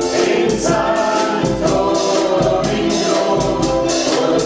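A group of ukuleles strummed together in a steady rhythm, with several voices singing along in unison.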